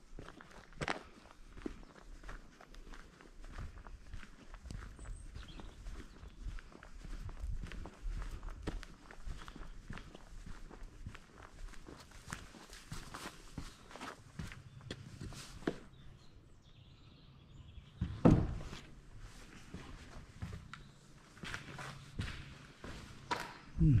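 Footsteps of a person walking over rough, debris-strewn ground, with a steady run of short crunches and scuffs. There is one louder thump about eighteen seconds in.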